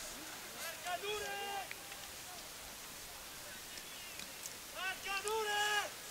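Distant shouts from voices on a football pitch: two short calls, one about a second in and another near the end, over faint open-air field ambience.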